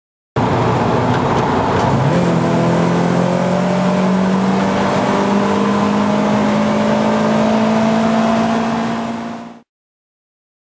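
Mercedes 190E Cosworth 16-valve four-cylinder, converted to individual throttle bodies with open cone air filters, heard from inside the car as it accelerates. The engine note steps up about two seconds in, then climbs slowly and steadily before fading out near the end.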